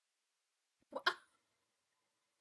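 A single short vocal catch from a person, like a hiccup, made of two quick parts about a second in.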